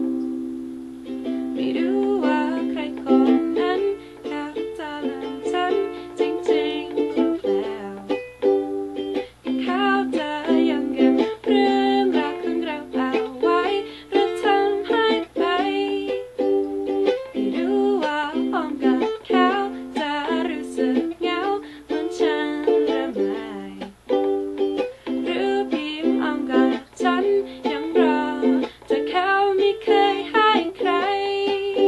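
A woman singing a Thai pop song while strumming chords on a ukulele.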